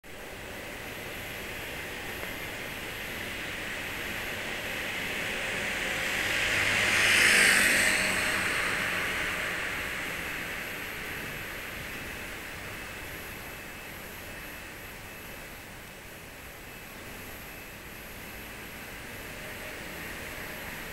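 A car driving past on the street, its tyre and engine noise rising to a peak about seven seconds in and fading away, over a steady background of traffic.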